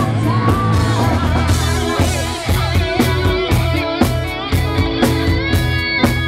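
Live rock band playing: a woman singing over electric guitar, bass guitar and drum kit. A sung line glides up and holds in the first second, then the drums settle into a steady beat of about two hits a second.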